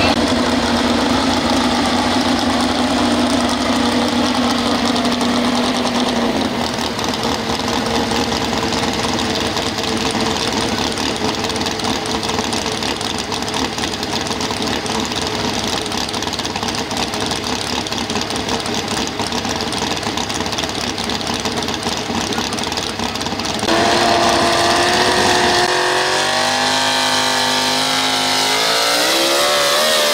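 Pro stock 4x4 pulling truck's engine, in an old Chevrolet pickup, running steadily at low revs, then getting louder about three quarters in and revving up in rising, wavering sweeps near the end as the truck sits hooked to the sled.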